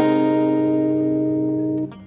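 Acoustic guitar chord ringing out and slowly fading, then damped near the end so that it stops abruptly.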